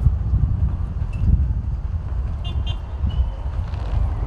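Outdoor ambience dominated by an uneven low rumble, with a few faint short high chirps about two and a half seconds in.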